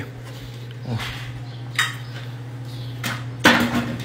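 Cutlery clinking against plates and dishes at a meal table: a few separate clinks, then a louder clatter near the end, over a steady low hum.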